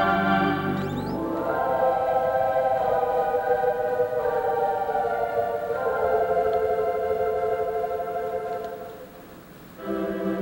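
Wurlitzer theatre pipe organ playing slow, held chords. About a second in, the full bass drops away, leaving softer sustained chords that change every second or two. Near the end it fades quieter before a fuller chord comes back in.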